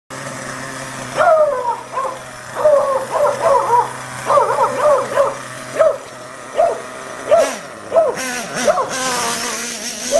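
A dog barking over and over, about one to two barks a second, over the steady running of a Kyosho KE25 two-stroke nitro engine in an RC truck. Near the end a higher engine sound comes up as the truck moves off.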